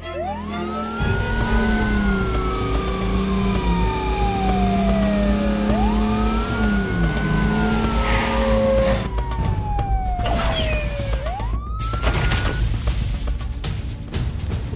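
Fire truck siren wailing in three slow cycles, each rising quickly and then falling slowly, over a low engine rumble. Near the end comes a loud burst of rushing noise: the fire truck's water spray.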